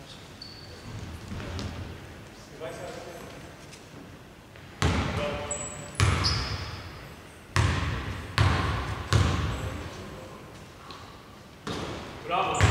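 A basketball bounced on a hardwood court at the free-throw line, about six sharp bounces roughly a second apart starting about five seconds in, each echoing through a large, near-empty sports hall.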